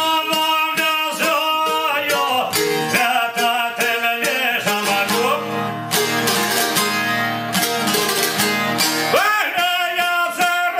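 Albanian folk song: a man singing to a çifteli and a sharki, two long-necked lutes plucked in quick runs.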